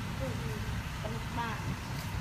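Faint voices talking, with a steady low rumble underneath.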